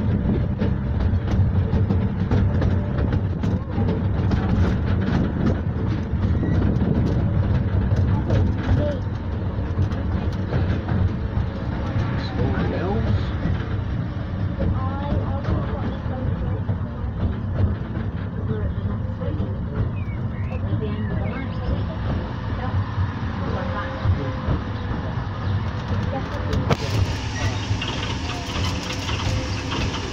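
Miniature railway coach running along its track, heard from on board: a steady rumble from the wheels and running gear, with constant rapid clicking and rattling of the carriage.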